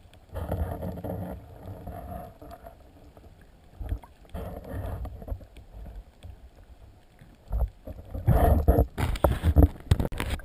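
Water moving around a camera in an underwater housing: muffled swishing that swells and fades, then turns into loud, irregular sloshing and splashing near the end as the camera comes up just under the surface.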